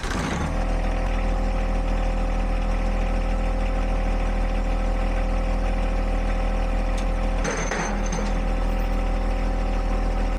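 John Deere 1025R tractor's three-cylinder diesel engine running at a steady idle, with a short rushing noise about seven and a half seconds in.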